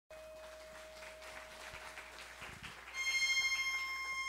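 Light audience applause dying away, then about three seconds in a bandoneon begins one high, sustained reedy note that opens the tango.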